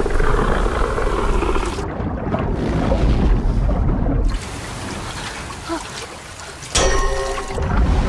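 Film sound design for a flooded-street and underwater scene: churning water with a deep rumble and music under it, which drops quieter about halfway through. Near the end a sudden loud, pitched blast cuts in.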